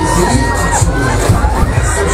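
Riders screaming and shouting on a spinning, looping fairground thrill ride, over loud music with a steady beat.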